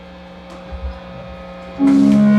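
Steady guitar-amplifier hum with faint held tones from the stage, then near the end the band comes in loud on a sustained distorted electric guitar chord.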